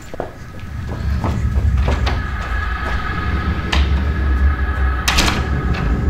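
A low rumble that builds over the first second and then holds, with a few sharp knocks and bangs on top, like a door being banged. The loudest is a double bang about five seconds in.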